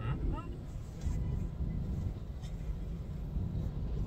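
Low, steady rumble of a car idling, heard inside the cabin while the car waits at a red light. A brief vocal murmur comes in the first half second.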